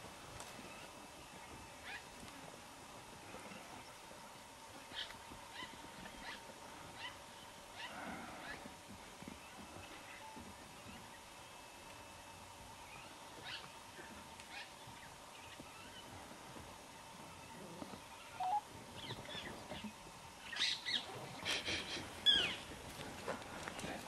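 Faint outdoor ambience with scattered short, sharp animal calls, and a cluster of louder calls about three-quarters of the way through.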